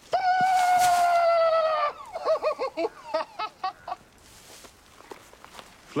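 A loud bird-like call: one long note, falling slightly in pitch for nearly two seconds, then a fast string of short warbling notes for about two seconds more.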